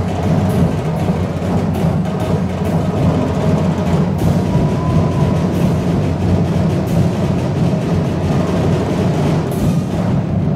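Loud drum-heavy festival music from a percussion ensemble, playing a continuous beat for the dancers.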